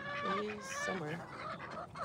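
Mixed flock of chickens and ducks calling softly, a run of short, low, wavering calls mostly in the first second or so.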